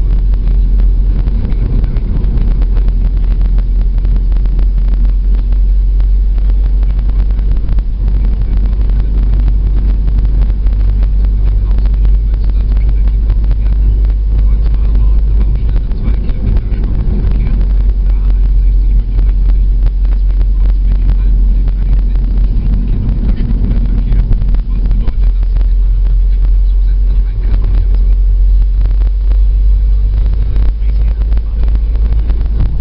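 Steady road noise inside a moving car's cabin: engine and tyre rumble, heavy in the bass, running evenly throughout.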